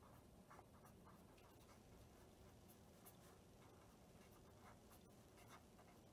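Faint scratching and light taps of a pen writing on paper on a clipboard, in short irregular strokes.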